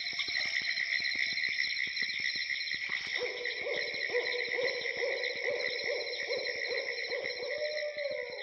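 Night nature ambience: a steady high chirring of insects, and from about three seconds in a low call repeated two or three times a second.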